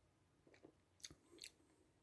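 Near silence broken by a few faint mouth clicks and lip smacks after swallowing a sip of beer, the two clearest about a second in and half a second later.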